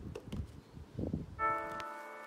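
Soft taps and knocks of a hand on a desk pressing the buttons of a small digital timer. About one and a half seconds in, background music starts with several held, bell-like notes at once, louder than the taps.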